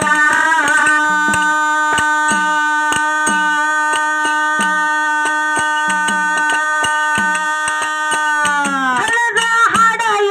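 Live Kannada folk song: a singer holds one long, steady note for several seconds, its pitch dropping away near the end. Under it, hand drums and percussion keep a steady beat of sharp strokes, with a deeper drum stroke about once a second.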